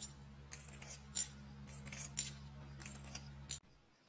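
Scissors snipping through scrap fabric in a series of short, sharp cuts over a low steady hum; it all stops abruptly near the end.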